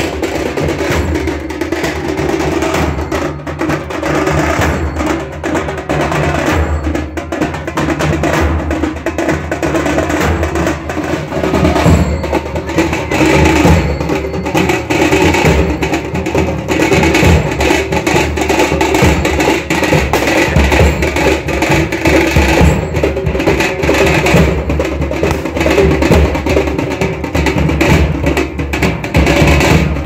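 Loud percussion music: drums and other percussion played in a continuous, busy rhythm, a little louder from about twelve seconds in.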